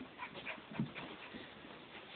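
Two dogs playing and scuffling, with short, quiet dog noises and one louder short sound a little before halfway through.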